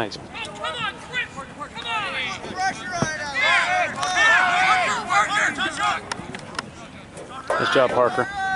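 Several people shouting short calls across a lacrosse field, voices overlapping and loudest around the middle. A few sharp knocks sound among the shouts.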